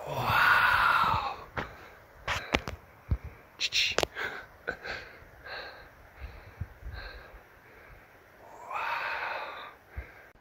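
A person's breath close to the microphone: a loud, breathy exhale lasting about a second at the start and another near the end, with scattered light clicks and taps in between.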